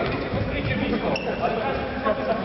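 Players' voices echoing in a sports hall during an indoor futsal game, with the thud of the ball on the court floor.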